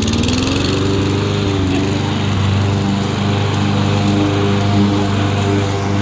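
Craftsman push mower's small single-cylinder petrol engine running steadily just after starting. Its speed climbs during the first second, then holds.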